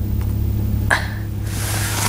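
Steady low hum inside a stationary car's cabin, with a single sharp click about a second in and a faint hiss rising toward the end.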